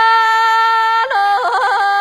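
A solo voice singing a slow, melismatic mantra melody: one long held note, then a step down to a lower note with quick ornamented turns about a second in.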